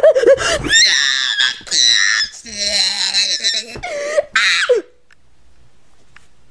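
A person's high-pitched screaming: several shrill yells one after another, which cut off suddenly about five seconds in.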